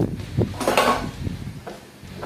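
Plastic bodywork of a Yamaha Mio Sporty scooter knocking and scraping as a loose trim pad is pulled off and handled: a knock about half a second in, a short scrape, then a few small clicks.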